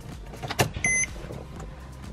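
Ignition key of a Porsche 911 Carrera S turned to the on position: a click from the ignition switch, then a single short beep from the instrument cluster as it wakes up with warning lights on, over a faint low hum. The engine is not started.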